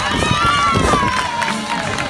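A person's voice holding one long note that falls slowly in pitch, over crowd noise.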